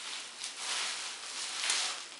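Plastic bubble wrap rustling and crinkling as it is pulled off a beer can by hand.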